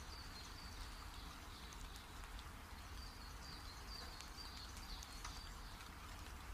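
Faint background ambience: a steady hiss and low rumble, with short high chirps repeating in runs and a few soft ticks.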